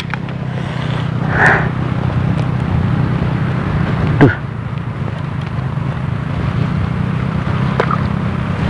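A steady, low engine hum. About four seconds in, a short sharp sound sweeps quickly down in pitch and is the loudest moment.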